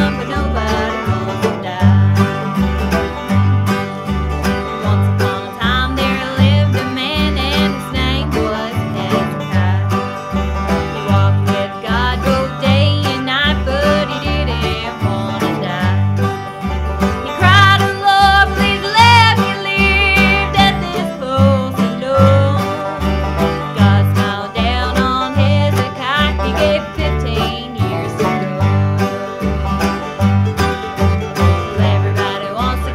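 Bluegrass band playing, with mandolin, banjo, acoustic guitar and upright bass over a steady, even bass beat.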